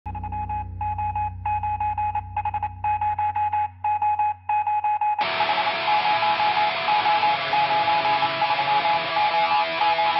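Intro music: a pulsing electronic tone over a low drone, broken by short gaps, then about five seconds in a full band track with guitar comes in suddenly.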